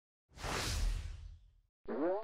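Logo-intro sound effect: a whoosh with a low rumble under it lasting about a second, then a short rising pitched sweep starting near the end.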